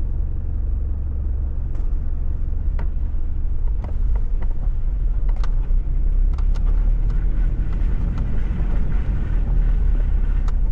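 Toyota Prado 4WD driving slowly over a muddy, rutted dirt track, heard from the cabin: a steady low rumble of engine and tyres, with scattered light knocks and clicks from the bumpy ground.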